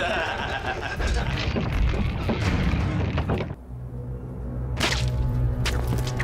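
Film soundtrack: a dense noisy stretch of swishing, thudding effects, which drops off suddenly about three and a half seconds in to a steady low music drone, with one sharp whoosh about a second later.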